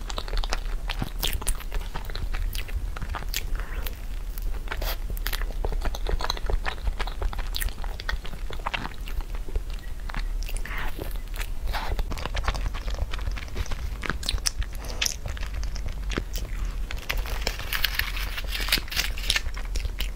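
A person biting and chewing a soft taro-paste crêpe close to the microphone, with a dense, irregular run of small mouth clicks.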